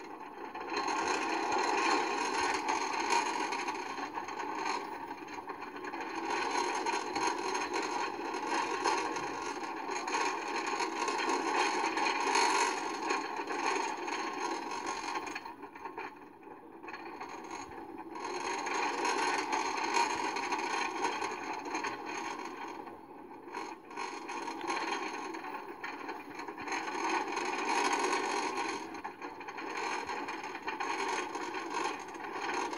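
Wooden roller coaster train running along its track, a continuous noisy rattle of the cars on the wooden structure that swells and eases as the ride goes on, dropping away briefly about halfway through and again later.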